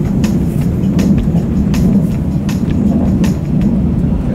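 Cabin noise inside a moving passenger train: a steady low rumble with frequent sharp clicks.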